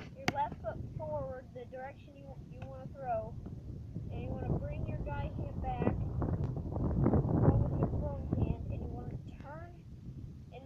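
Wind buffeting the microphone in gusts, strongest about seven to eight seconds in, with a voice talking in the background.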